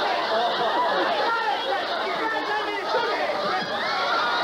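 Several people talking excitedly over one another, a continuous jumble of overlapping voices.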